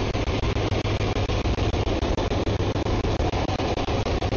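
C-130 Hercules four-engined turboprop passing low, a loud steady rumble and roar of engines and propellers, with a regular rapid clicking running through it.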